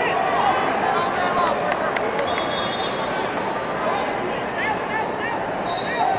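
Arena crowd at a wrestling bout: many voices shouting and cheering over one another, with a few sharp slaps or clicks about one and a half to two seconds in.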